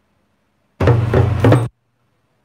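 Drum strokes on a Yoruba talking drum with a curved stick, played right at the microphone: a loud burst of knocking just under a second long, beginning nearly a second in.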